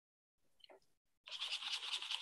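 A paintbrush scrubbing paint onto a painting surface: quick rough brushing strokes start about halfway through, after near silence.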